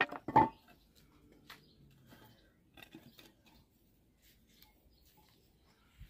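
Pine timber boards knocked down onto a concrete driveway as they are set in place: two sharp wooden knocks at the start, then a few faint taps and near silence.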